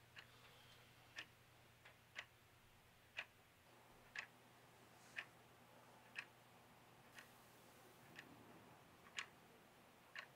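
A clock ticking faintly and evenly, about once a second.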